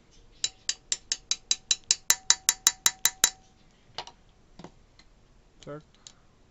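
Hammer tapping a steel drift against the end of a small stationary engine's rocker-arm shaft to drive it into its bores: a quick run of about fifteen light metallic taps, about six a second, growing louder, with a faint ring under them. A couple of single clicks follow as the shaft seats.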